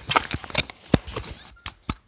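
Toy pump-action air-powered foam-ball blaster being worked: a string of irregular plastic clicks and knocks, the sharpest about a second in.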